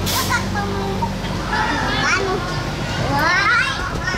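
Children's voices and high shouts at an indoor play centre, overlapping and loudest about three seconds in, over a steady low hum.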